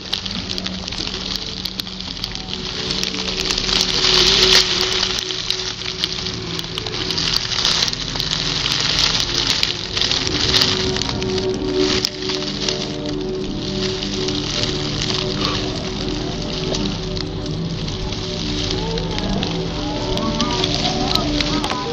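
Dry grass and twigs rustling and crackling close to the microphone, with many small clicks, over a low drone of held musical notes that change slowly.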